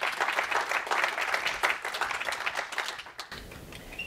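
Audience applauding, many close-packed hand claps that stop abruptly about three seconds in.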